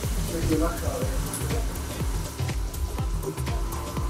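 Light sizzling and crackling from an arepa toasting on a wire grill over a gas flame, under background music with a steady bass beat.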